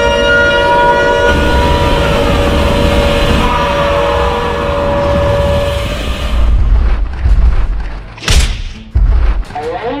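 A loud, siren-like monster blare, steady tones over a deep rumble, carries on from the start and fades out about six seconds in. It is followed by a series of heavy booming thumps in the last few seconds.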